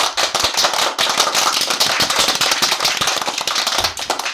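Crowd applause: many hands clapping densely and steadily.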